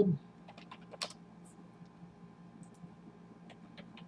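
Typing on a computer keyboard: scattered, irregular keystrokes, the loudest about a second in.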